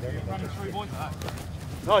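Indistinct voices talking over a steady low hum, with a louder voice calling out at the very end.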